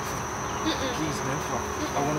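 Crickets chirring in a steady high-pitched drone, a night-time ambience, with faint voice sounds underneath.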